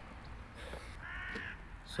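A single bird call about a second in, lasting roughly half a second and fairly faint.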